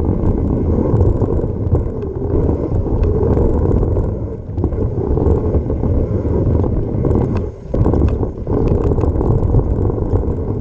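Mountain bike descending a dry dirt trail, heard from the rider's action camera: tyres rumbling over the dirt and wind on the microphone, with small rattles and clicks from the bike over the bumps. The noise briefly drops away about three quarters of the way through, then comes back.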